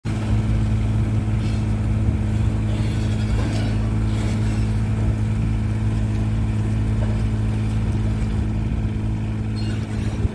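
Palazzani Ragno TSJ23 spider lift's engine running steadily at one speed, a constant low hum.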